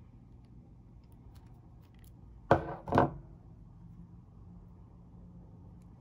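Hand wire stripper/crimper squeezing an insulated ring terminal onto a 16-gauge wire: two sharp metallic clacks about half a second apart, a little past halfway, as the jaws close on the terminal barrel.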